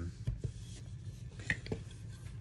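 Light handling noise: a few soft knocks and rubs as a fly rod and reel are put down, two near the start and two more about a second and a half in.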